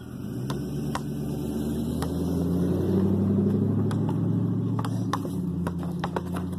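A motor vehicle engine running steadily nearby, growing louder over the first few seconds and easing off near the end. Sharp knocks of a basketball bouncing on the pavement sound over it.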